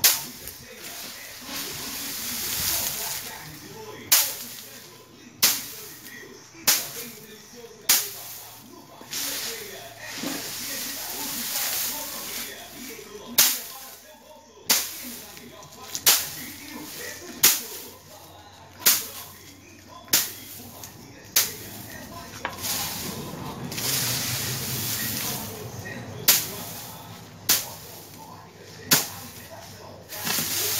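A wooden pole beating a pile of dried bean plants to thresh the beans from their pods: sharp whacks about one every second and a bit, in runs of several strokes, with the dry rustle of stalks and pods being stirred between the runs.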